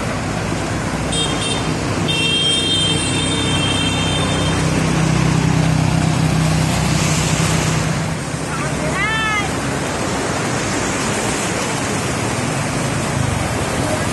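Motor vehicles and motorbikes driving through knee-deep floodwater: water splashing and rushing under an engine running. A vehicle horn sounds for a few seconds near the start, and a brief chirping squeak comes a little past the middle.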